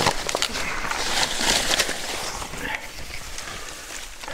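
Paper crumpling and dry grass and brush rustling as paper is stuffed into the base of a heap of dead branches, full of small crackles and clicks. It thins out over the last second or two.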